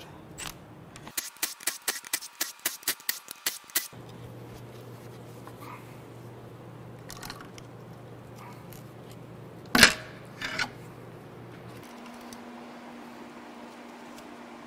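Ratchet clicking rapidly and metallically, about five clicks a second for nearly three seconds, while undoing the 10 mm bed-plate bolts on a Cadillac Northstar V8 block. This is followed by a steady low hum and one sharp metal clank about ten seconds in.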